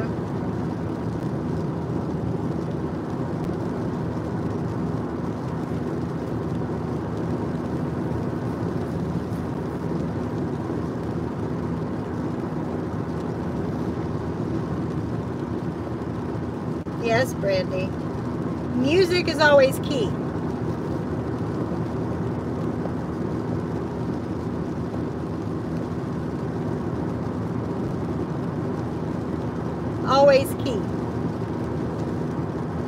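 Steady road and engine noise inside a moving car's cabin. A couple of short voice sounds come about two-thirds of the way through.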